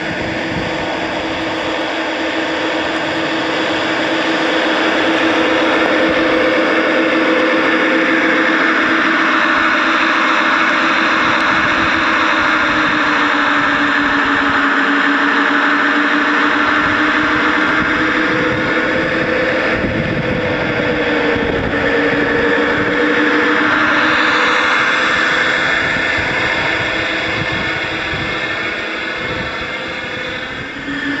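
Gauge 1 model Class 66 diesel locomotive running under power, a loud, continuous engine-like drone whose pitch sags slowly and then climbs again as it pushes the snow plough through deep snow.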